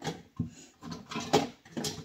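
Items being handled and moved about in a storage bin: several short knocks and clatters with rustling between them.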